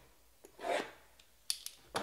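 Quiet handling of a sealed trading-card box: a brief soft rub about half a second in, then a few light clicks and taps near the end as a hand takes hold of the box.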